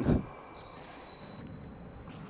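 Low steady room noise of an indoor four-wall handball court during a rally, with a few faint knocks from the ball.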